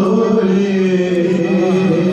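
A man's voice reciting an Urdu naat unaccompanied, holding long, drawn-out sung notes that slide slowly up and down in pitch.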